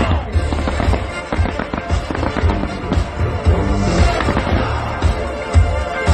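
A fireworks display in full swing: rapid, overlapping bangs and crackling shells, with a loud bang at the very start. Music plays alongside.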